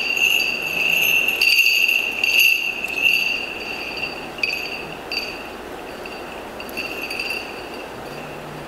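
Small bells on the chains of a swinging censer jingling as the altar is incensed, with the bells clinking on each swing. The jingling is loudest in the first three seconds and grows fainter after that.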